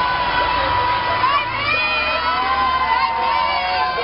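Children shouting and cheering from the open windows of a passing school bus, many high voices overlapping, over the low rumble of the bus going by.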